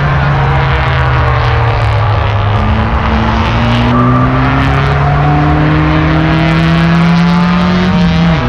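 Touring race car engine held at high revs in one gear as the car accelerates, its pitch climbing slowly and steadily. It is heard from inside the car.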